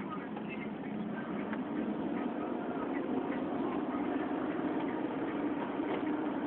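Steady road and engine drone of a moving car heard from inside the cabin, rising slightly in loudness.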